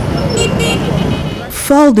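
City street traffic: cars and motorcycles running past as a steady noise, with two brief high tones about half a second in. A narrating voice starts near the end.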